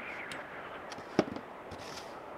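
Plastic snow shovel pushing and scraping through snow across deck boards. One sharp, loud knock comes about a second in, as the blade strikes.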